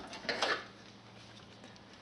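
An old steel vernier caliper scraping and clinking briefly against a metal workbench top as it is picked up, about half a second in.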